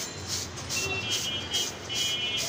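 Pigeon-feed grain rattling in a plastic colander shaken by hand, in quick even shakes about three a second, as the fine dust is sifted out of the grain.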